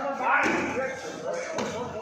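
Wrestlers' bodies hitting the padded mat in a takedown: a heavy thud about half a second in. Men's voices sound around it in a large hall.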